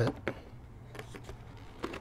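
A plastic bucket-lid opener clicking and tapping against the rim of a plastic 5-gallon bucket lid as it is hooked on: three faint, short clicks over a low steady hum.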